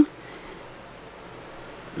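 Steady faint background hiss: room tone, with no distinct event.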